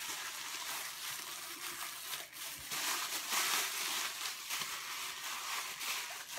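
Crinkly wrapping rustling and crinkling continuously as it is pulled off an item by hand.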